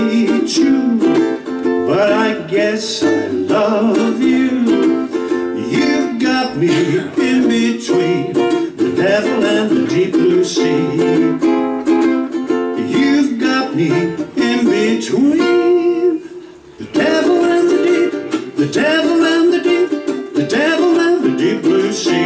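A man singing a jazz-standard melody to his own accompaniment on a plucked string instrument, with a short break in the playing about two-thirds of the way through.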